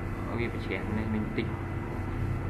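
A steady low hum with a few soft, brief spoken sounds over it.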